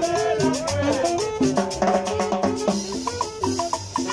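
Live Latin dance band playing salsa-style music: conga drum and a scraped metal güiro keep a quick beat under a melody of stepping notes.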